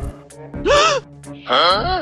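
Two short, startled "ah!" cries from a voice actor, each rising and then falling in pitch: a jumpy, frightened yelp. The first comes a little before the middle and the second near the end.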